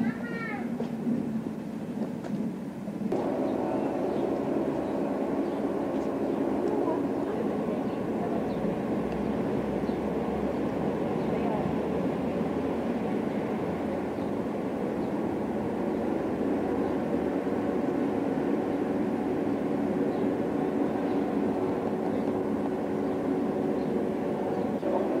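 A steady mechanical drone made of several low hums held on one pitch, setting in abruptly about three seconds in and running on unchanged, recorded on a camcorder's built-in microphone.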